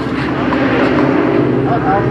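A steady, low engine drone, with faint voices in the background.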